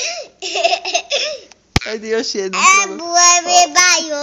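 A young child giggling in short breathy bursts, then a high-pitched squealing 'eee' that steps up and holds for about two seconds, with a sharp click just before the squeal.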